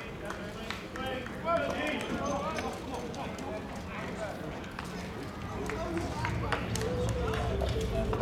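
Several people talking at once, indistinct and at a distance, with a few light clicks. A low rumble comes in about six seconds in.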